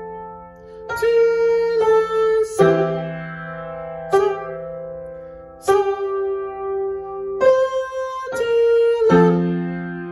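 Yamaha upright piano played slowly with both hands, about eight single notes and chords struck one after another and left to ring as they fade.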